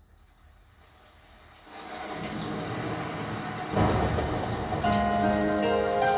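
The recorded intro of a song playing through Spendor SP1 loudspeakers: a rain sound swells in, a low rumble like thunder comes about four seconds in, and sustained keyboard notes enter near the end.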